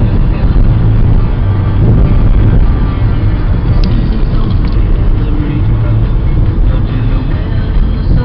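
Steady road and engine rumble inside a car's cabin at freeway speed, with music playing underneath.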